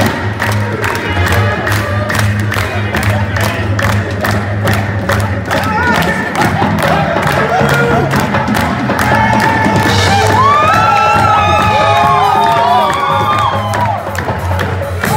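Live qawwali music: a steady harmonium drone under a fast, even beat, with a crowd cheering and shouting over it. In the last few seconds high gliding melodic lines rise above the mix.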